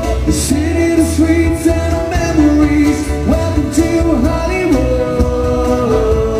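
Live unplugged pop-rock band: a male lead vocal sings a melody over acoustic guitar and bass, with a light percussion beat ticking about every half second.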